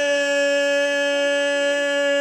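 A person's voice holding one long, steady high note, sliding up into it at the start.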